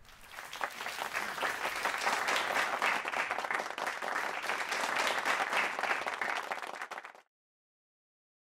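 Audience applauding: many hands clapping, building up over the first second or so and then cutting off suddenly about seven seconds in.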